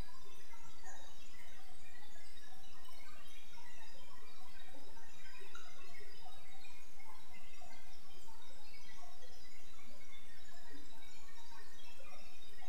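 Steady background hiss with many faint, scattered chirp-like blips; no speech.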